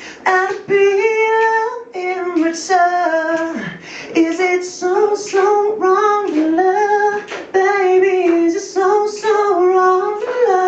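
A man singing a pop melody live into a microphone, high in his range, with held notes that bend and slide between pitches.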